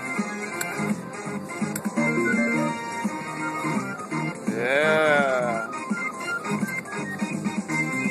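Slot machine's free-spin bonus music, a repeating electronic tune, with one swooping tone that rises and then falls about halfway through.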